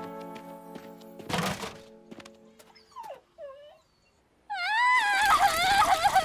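Cartoon background music with a whoosh about a second in, then short whimpering pitch slides, and from about four and a half seconds a loud, high wail that wavers up and down in pitch.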